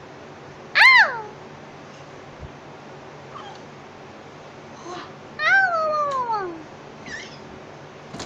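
A one-year-old baby's high-pitched vocal squeals: a short one that rises and falls about a second in, and a longer one that slides down in pitch about five and a half seconds in.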